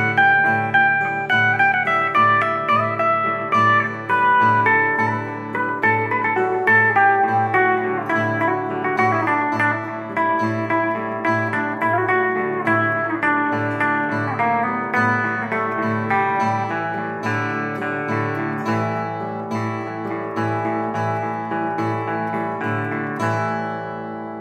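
An electric guitar and an acoustic guitar play an instrumental passage of a gentle psychedelic folk song. A picked melody runs over a steady, repeating low note pattern.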